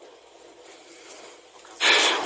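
Faint steady hiss, then near the end a sudden noisy intake of breath just before speech.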